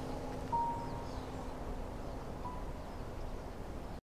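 Quiet, sparse background score: two soft held notes, about half a second and two and a half seconds in, over a low steady drone.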